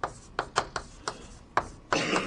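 Writing on a lecture board: about half a dozen sharp, irregular taps, with faint scraping between them.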